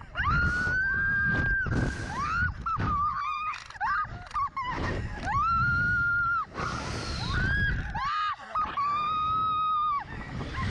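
Two young women screaming and laughing while being flung on a Slingshot reverse-bungee ride: several long, high screams of about a second each, near the start, around the middle and near the end, broken by shorter cries and laughter, over steady wind noise on the microphone.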